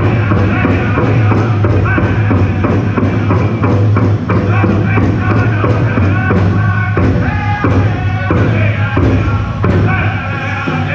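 Powwow drum group singing a dance song: several voices singing together over a steady beat on a large powwow drum.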